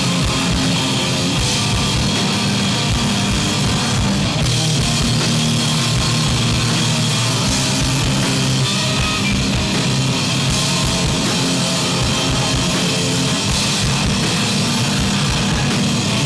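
A live sludge metal band playing at full volume: electric guitar, bass and a drum kit with cymbals, with a singer screaming into the microphone.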